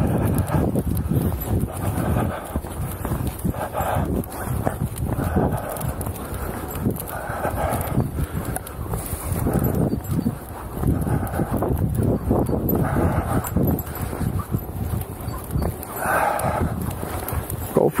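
Footsteps at a walking pace on a dry-leaf-covered dirt path, with leaf rustle and steady movement noise.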